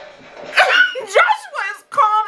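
A woman's high-pitched, wordless cries of fright: a quick run of short sounds sliding up and down in pitch, starting about half a second in.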